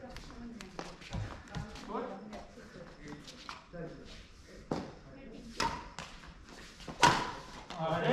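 Badminton rackets striking a shuttlecock in a rally in a large hall: a string of sharp hits, the loudest three in the second half, roughly a second apart, two of them with a brief ringing ping. Low voices run underneath.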